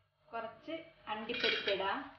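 Cashew nuts tipped into a heavy brass pan, clinking and clattering against the metal, with a voice speaking briefly over it.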